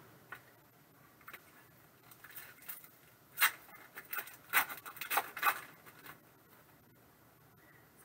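Plastic trading-card pack wrapper crinkling and tearing as the pack is opened by hand, a run of short crackles from about two to six seconds in.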